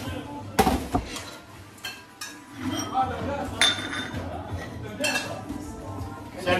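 Kitchen clatter of metal trays, pans, utensils and ceramic bowls being handled as dishes are plated, with several sharp ringing clinks, the loudest about half a second in.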